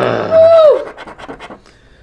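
A drawn-out voice sound with a held, then falling pitch, then about a second of quick scraping strokes as a coin scratches the coating off a scratch-off lottery ticket.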